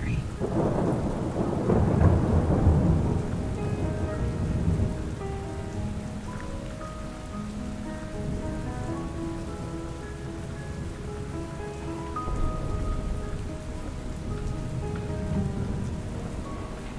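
Steady rain ambience with a long roll of thunder over the first few seconds and another low rumble about twelve seconds in, with faint soft music notes underneath.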